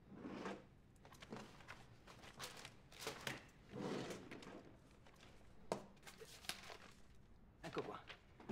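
Soft, irregular paper rustling and desk-handling knocks as a folded sheet of paper is taken out and unfolded, with one sharp click just before six seconds in.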